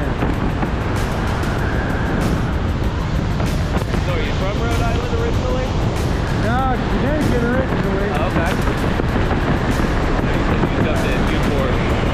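Wind rushing and buffeting over the camera microphone during a parachute canopy descent, with background music underneath.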